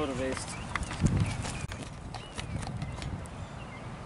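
Outdoor ambience: wind rumbling on the microphone, with scattered short sharp clicks and a few brief high chirps. A short voice sound comes at the very start.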